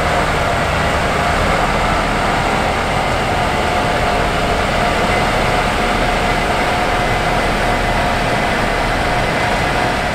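Case IH 8250 Axial-Flow combine harvester running steadily under load while threshing wheat: a continuous mechanical rumble with a steady high whine on top.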